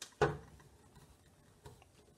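A single spoken word, then faint light ticks and a small click as two-strand copper wire is wound and pressed onto a 3D-printed plastic spool.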